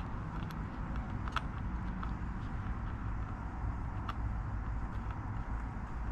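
A few faint metallic clicks as steel washers and a nut are fitted by hand onto a caster's mounting bolt, over a steady low rumble.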